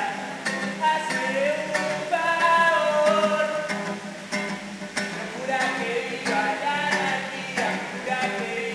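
A man singing over a strummed acoustic guitar, the strokes coming in a steady rhythm under a melody that slides up and down.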